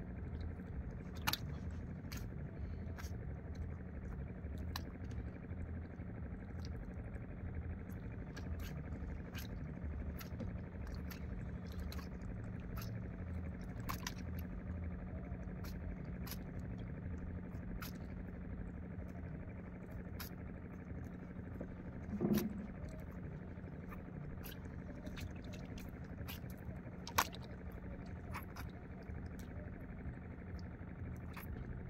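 Steady low hum of a running motor, under scattered light clicks and ticks as a handline is worked in a small wooden outrigger boat. A louder knock comes about three-quarters of the way through, and a single sharp click near the end.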